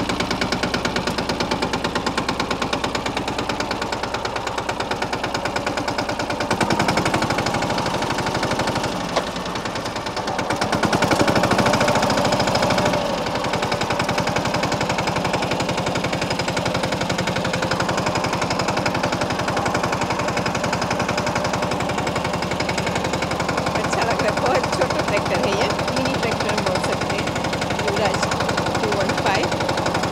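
Mahindra Yuvraj 215 NXT compact tractor's single-cylinder diesel engine running under load in first gear, with a rapid, even knocking beat from its firing strokes. It gets louder for a couple of seconds about 11 s in.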